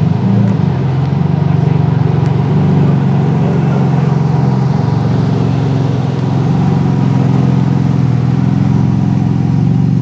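Sports car engine idling steadily close by, a low, even exhaust note with no revving.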